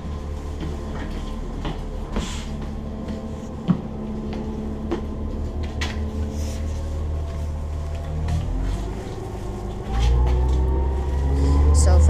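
Cabin of a New Flyer C40LF compressed-natural-gas transit bus on the move: a steady low engine drone with scattered knocks and rattles from the interior. About ten seconds in the drone grows louder and a whine rises in pitch as the bus accelerates.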